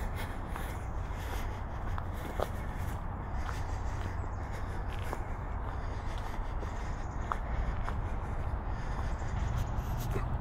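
Footsteps on a dirt trail strewn with fallen leaves, at a steady walking pace, over a constant low rumble.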